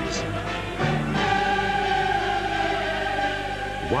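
Background music with choral singing: a choir holds one long sustained chord from about a second in.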